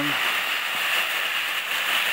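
Crumpled aluminium foil crinkling steadily as a hand grabs and pulls it out of a plastic bin bag, with the bag rustling too.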